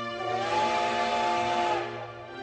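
Slow background music with sustained chords. A breathy, whistle-like wind-instrument note slides up about a third of a second in, holds steady, and fades away near the end.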